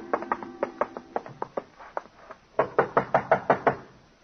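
Radio-drama sound effect of knocking on a door: a quick run of about nine raps in the second half. Before it, the tail of a plucked-guitar music bridge fades out with lighter taps.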